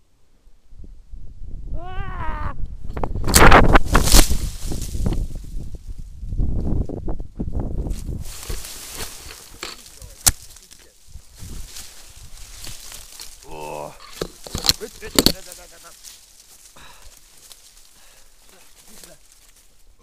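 Rough rustling and rubbing of clothing and brush right against an action camera's microphone, loudest a few seconds in, with a few sharp clicks later on. A short wavering shout is heard about two seconds in, and another about fourteen seconds in.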